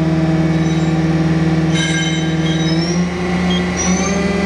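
Mori Seiki NH5000 DCG horizontal machining center's spindle running free at about 9,500 RPM with a steady hum. Higher whistling tones join about two seconds in, and the hum steps up in pitch about three seconds in as the spindle speeds up.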